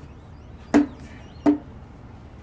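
Two sharp knocks, about three-quarters of a second apart, each with a brief low ring, from hand work while packing refractory into a steel propane forge.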